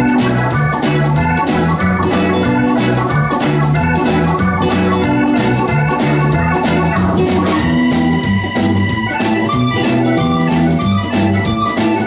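Live blues band playing an instrumental passage: an organ-toned electric keyboard over electric guitar, electric bass and drum kit, with a steady beat and no singing.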